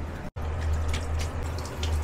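A cat lapping from a plastic basin: soft, irregular wet clicks, two or three a second, over a low steady hum.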